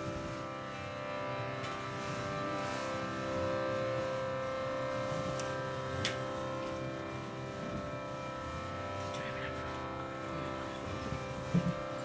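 Harmonium holding a steady sustained drone chord between chanted lines, with one faint click about six seconds in.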